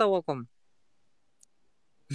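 A man's voice finishing a phrase, then near silence with one faint, short click about halfway through.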